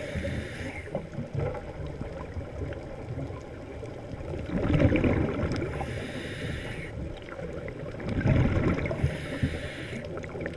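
Scuba diver's regulator breathing heard underwater: a hiss on each inhale and a rumbling rush of exhaust bubbles on each exhale, one breath every few seconds, with bubble bursts about five and eight and a half seconds in.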